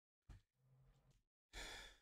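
Near silence, with a faint breath out from a person about one and a half seconds in.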